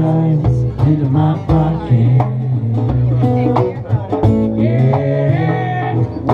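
A live band playing: acoustic guitars strumming, with regular drum strikes.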